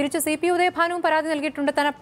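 Speech only: a woman talking without pause.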